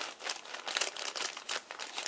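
Small clear plastic zip-lock bag crinkling in the hands as a brass shim is taken out of it, a quick, irregular run of crackles.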